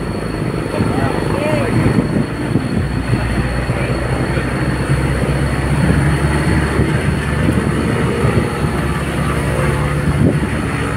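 Engine and road noise of a moving vehicle heard from inside its cabin: a steady low engine hum under a constant rumble of tyres on the road.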